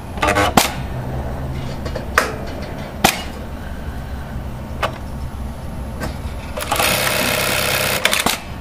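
Juki LK-1900 computer-controlled industrial bartacking machine stitching a 42-stitch bartack through heavy nylon webbing. A steady low motor hum with a few sharp clicks, then, about six and a half seconds in, a dense burst of rapid stitching that lasts about a second and a half.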